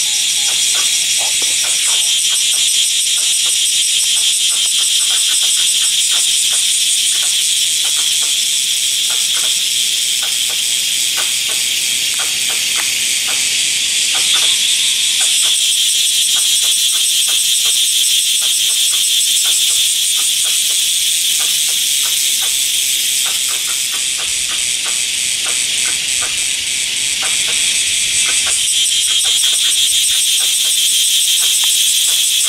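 Loud, unbroken chorus of cicadas: a dense, high, rapidly pulsing buzz that swells and eases slightly but never stops.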